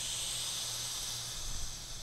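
A scuba diver's BC (buoyancy compensator) pull-dump valve venting air in a steady hiss, tapering off near the end as the jacket empties.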